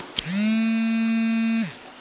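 A steady electric buzz lasting about a second and a half. It slides briefly up to pitch at the start, holds one flat tone, then cuts off.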